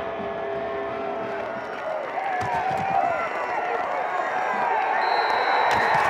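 Football stadium crowd cheering and shouting, many voices at once, growing louder from about two seconds in.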